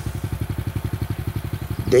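A small engine idling close by, with a rapid, even putter of about eighteen beats a second.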